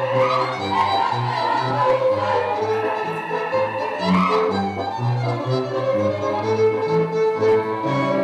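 Romanian folk dance music playing for a circle dance: a lively melody over a bass line with a steady beat.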